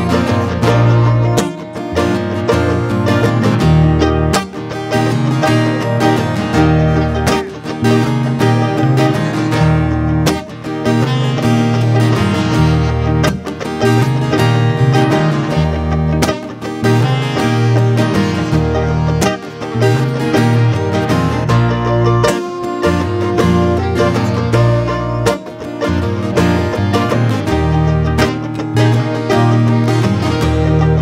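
Live band playing an instrumental passage: strummed acoustic guitar and electric bass guitar with saxophones playing over them.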